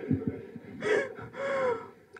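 A woman laughing breathily into a handheld microphone: two short gasping laugh breaths about a second in.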